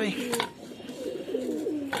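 Domestic pigeons cooing, several low, wavering coos overlapping.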